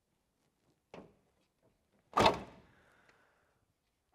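The driver's door of a 1970 Plymouth Cuda being shut. A light click comes about a second in, then a single heavy thunk a little after two seconds that fades quickly.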